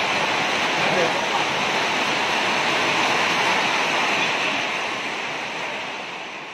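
Rain falling steadily, fading out near the end.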